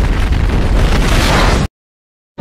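Explosion sound effect: a loud, sustained blast with a heavy deep low end that cuts off suddenly to silence near the end.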